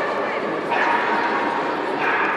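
Fox terrier barking in short, high yaps as it works an agility course, heard over background chatter.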